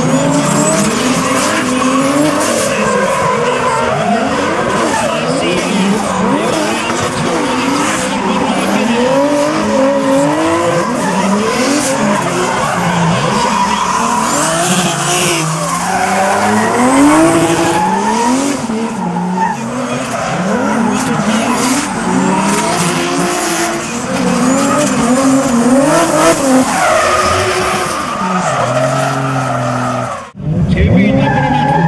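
Drift car engine revving hard, its pitch rising and falling again and again as the throttle is worked through the slide. Rear tyres screech as they spin in the smoke.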